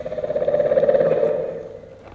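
A low, rapidly pulsing, rattling animal-like call that swells up and fades away over about a second and a half.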